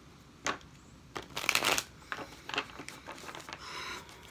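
A deck of tarot cards being shuffled by hand: a single snap, then a louder flurry of rapid card slaps around a second and a half in, followed by lighter scattered card clicks.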